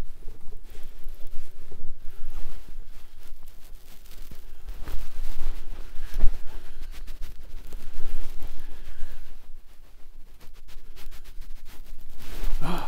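Outdoor ambience with uneven low rumble, like wind buffeting the microphone, and a few faint knocks and rustles.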